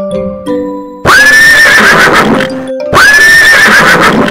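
A horse neighing twice: two loud whinnies, the same call repeated about two seconds apart, each rising in pitch and then wavering. A light chiming tune plays before the first one.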